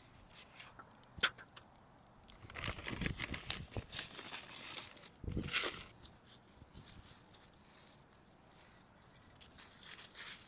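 Hands working loose garden soil and wood mulch around a newly set plant: irregular rustling and scraping with a few sharp clicks, loudest about three and five and a half seconds in.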